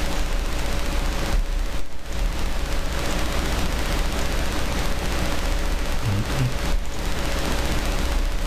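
Loud, steady crackling hiss from a noisy microphone recording, with a faint steady hum tone under it. A brief murmur from the narrator comes about six seconds in.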